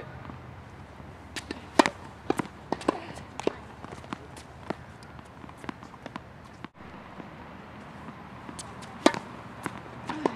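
Tennis balls struck by rackets and bouncing on a hard court: a string of sharp, separate pops, the loudest about two seconds in and another about nine seconds in.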